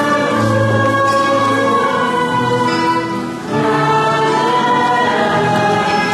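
A choir singing a hymn in long held notes, with a short break between phrases about three seconds in.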